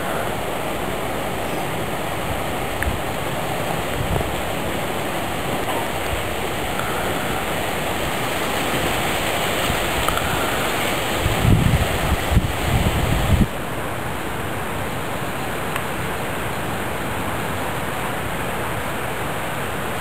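Steady rushing noise with no distinct events. A few strong low rumbles come a little past the middle and stop abruptly.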